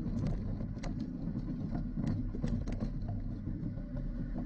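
Bicycle rolling over a rough dirt and gravel track, heard through a handlebar-mounted camera: a steady low rumble from the tyres and frame with scattered clicks and rattles.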